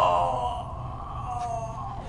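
A drawn-out groaning call that starts suddenly, slides slowly down in pitch and fades over about two seconds, over a steady low hum.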